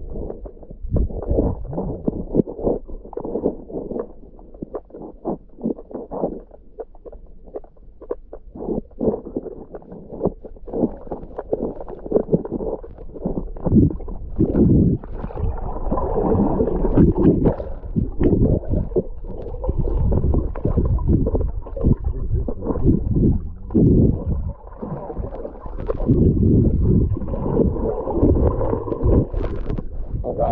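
Muffled underwater sloshing, gurgling and irregular dull thumps picked up by an action camera held submerged and moved about in river water. The sound is dull and bassy throughout, growing busier and louder about halfway through.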